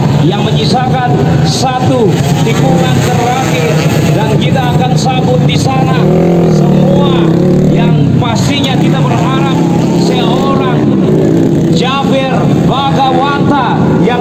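Dirt-bike engines running in the pits, their steady drone swelling for a couple of seconds midway, under continuous crowd voices.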